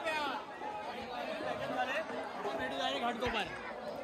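Several people chattering at once in the background, overlapping voices with no one voice standing out, and a single low thump a little after three seconds in.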